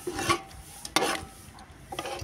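Metal spoon scraping and clinking against a dish while curry is served, two sharp scrapes about a second apart.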